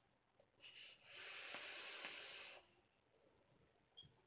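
A hit on a vape box mod with a rebuildable dripping atomizer: a short breath sound, then a quiet, steady hiss of air and vapour lasting about a second and a half that stops fairly abruptly.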